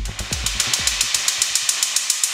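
Industrial/dark techno track in a breakdown: the kick drum and bass fade out within the first second, leaving a steady run of fast hi-hat hits, about eight a second.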